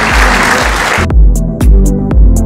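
Audience applause over background music with a steady bass beat. The applause cuts off abruptly about halfway through, leaving the music's drum beat and crisp high ticks.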